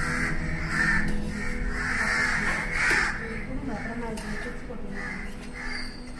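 Crows cawing repeatedly, a string of short harsh calls, over background music.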